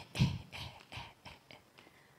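A woman laughing into a microphone: a run of short laughs, loudest at first and trailing off over a couple of seconds.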